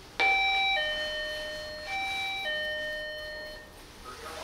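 Electronic door chime ringing a two-note ding-dong, high note then low, twice in a row about two seconds apart, each note ringing on and fading.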